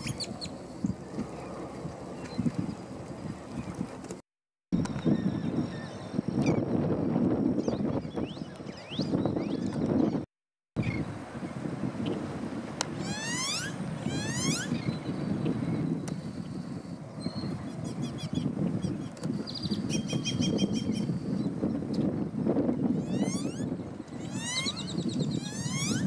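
Several birds calling over steady wind noise: repeated quick falling whistles and bursts of rapid clicking notes. The sound drops out briefly twice.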